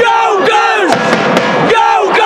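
A man yelling in three drawn-out, high shouts, each dropping in pitch at the end, over crowd noise.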